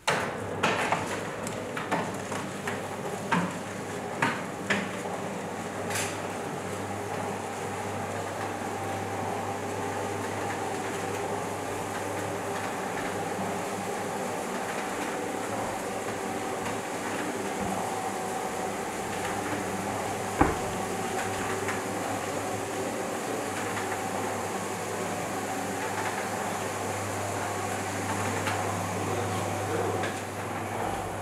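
A steady mechanical hum, like a motor or fan running, with a few clicks in the first several seconds and one sharp click about twenty seconds in.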